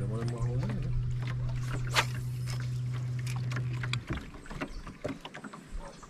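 Bow-mounted electric trolling motor running with a steady low hum, cutting off about four seconds in.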